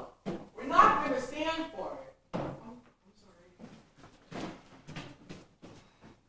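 Actors' voices speaking on stage, loudest in the first two seconds, then a few shorter phrases, with several short knocks near the end.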